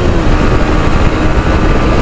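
Yamaha R15 V3's 155 cc single-cylinder engine running at a steady speed while ridden. Its note dips slightly just after the start and then holds steady over heavy wind rumble on the microphone.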